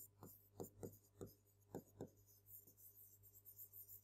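Faint short strokes of a pen writing by hand on a board surface: a quick run of small scratches that thin out in the second half.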